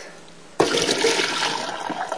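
Hot cooking water poured from a pot of egg noodles and peas into a wire-mesh strainer in a stainless steel sink, rushing and splashing. The pour starts suddenly about half a second in.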